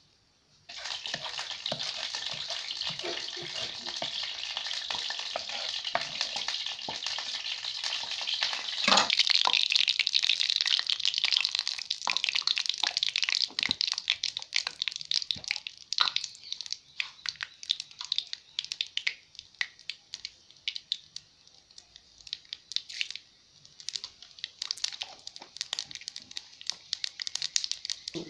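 Oil sizzling and crackling in a hot pan. It starts suddenly about a second in, is loudest around nine seconds in, then thins to scattered pops and spits.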